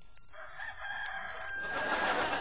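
A rooster crowing once: a single long cock-a-doodle-doo that starts about a third of a second in and grows louder towards the end.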